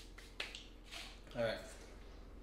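Hands being dusted off against each other, with one sharp snap-like slap about half a second in and a few fainter brushing clicks.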